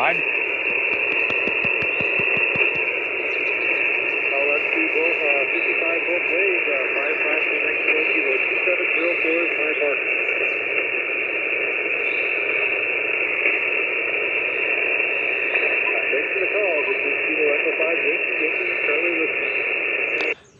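An HF ham radio transceiver's speaker giving out single-sideband reception: a steady, thin hiss of static, with a weak station's voice faintly heard under it.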